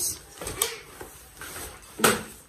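Baby stroller being folded after its release button is pressed: a sharp click from the frame's folding mechanism about half a second in, then the frame and fabric shifting as it collapses.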